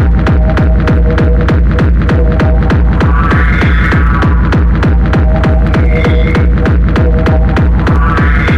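Hard electronic dance track in a darkstep/hardcore style: a fast, steady kick drum over heavy bass, with a short high synth phrase coming back about every two and a half seconds.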